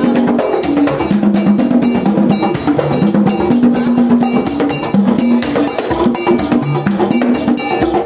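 Vodou ceremonial drumming: upright hand drums with sharp percussion strokes in a fast, even beat, about four a second.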